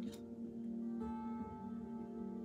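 Soft background music of sustained notes, with a new, higher note coming in about halfway through.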